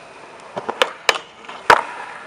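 Skateboard on concrete: a few short, sharp knocks of the board and wheels, ending in one loud slap about three-quarters of the way through as the board comes down and rolls away.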